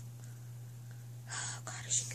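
A soft, breathy whisper or exhale about one and a half seconds in, with a second short breath near the end, over a steady low hum.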